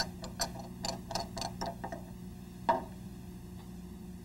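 Small irregular clicks and taps of lab glassware and a plastic syringe being handled on a benchtop: a quick run of light knocks through the first two seconds, then one more a little before three seconds.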